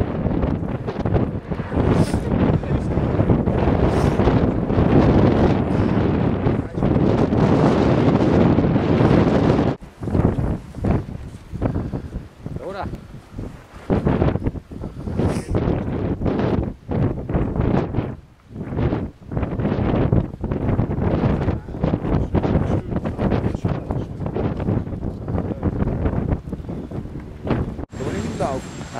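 Strong wind buffeting the microphone: a dense, steady rush for about the first ten seconds, then breaking into gusts that come and go.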